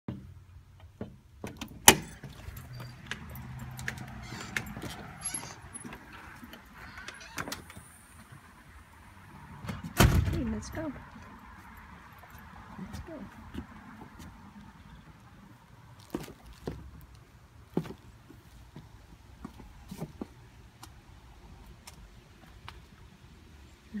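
Scattered clicks, knocks and metallic jingles from a dog's leash clip and collar hardware, with one loud thump about ten seconds in.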